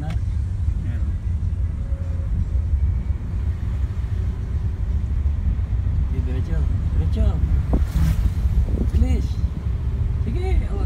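Steady low rumble of a Toyota car's engine and road noise heard from inside the cabin while driving. Faint voices come in over it in the second half, with a single click near the end.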